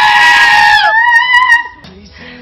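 Screaming-goat sound effect: a loud, long goat scream held on one high pitch that drops away just under a second in, followed by a shorter second scream.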